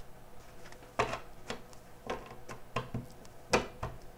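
A deck of tarot cards being shuffled by hand: a run of irregular soft slaps and snaps of the cards, starting about a second in, the loudest near the end.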